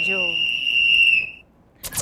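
A studio sound effect: one long, steady high-pitched tone that fades out after about a second and a half. After a brief silence, a quick whoosh leads into music near the end.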